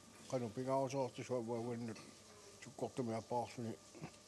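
Speech only: a man talking in short phrases with brief pauses, close to the microphone.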